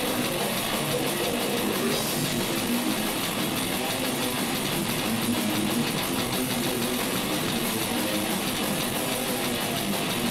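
Metal band playing live: electric guitars over a drum kit, a dense, steady wall of sound with no pauses.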